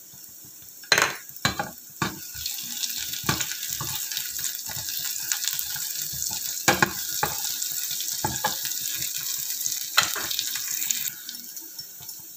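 Chopped garlic, onion and green chillies frying in oil in a nonstick pan, a steady sizzle that stops suddenly near the end. Sharp knocks and scrapes from a metal spatula against the pan come through it.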